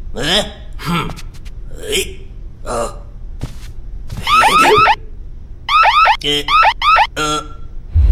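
Store anti-theft security gate alarm going off in two bursts of rapid, repeating rising electronic chirps, about four seconds in and again near the end, set off by goods carried through the gate. Before it come short wordless vocal sounds from a cartoon character.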